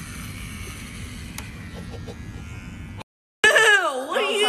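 Electric hair clippers buzzing steadily against a sleeping boy's head, with a faint click partway through. The buzz cuts off about three seconds in, and after a short gap a loud voice with gliding pitch begins.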